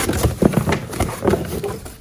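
Corrugated cardboard box being pulled open flat by hand, its panels and folds crackling and rustling in an irregular run of sharp cracks.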